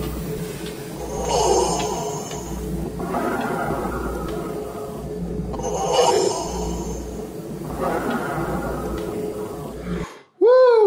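Slow, heavy breathing through a respirator face mask, about one breath every four to five seconds, the breath sound swelling and fading over a low steady drone.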